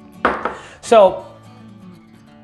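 A glass tasting glass set down on a bar top with a short knock, followed by soft background music.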